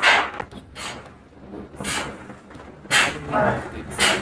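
Air-operated diaphragm pump running on compressed air as it transfers fuel, with a hissing puff of exhaust air about once a second on each stroke. A short spoken word comes near the end.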